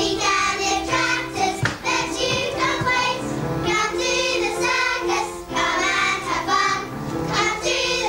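A group of children singing a song together, with held notes under the voices; the singing goes on without a break.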